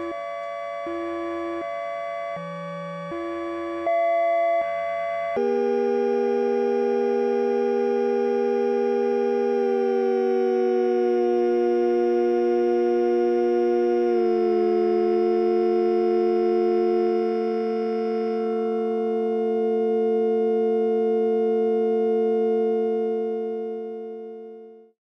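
Software modular synthesizer patch (VCV Rack) playing a stepped sequence of synth notes, then about five seconds in settling onto a held chord of several sustained tones. The chord slides down slightly in pitch twice and begins to fade out near the end.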